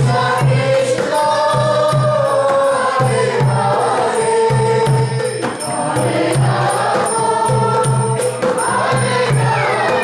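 Devotional Vaishnava kirtan: singing voices chanting a melodic mantra over a steady low beat, with the rattle of small hand percussion.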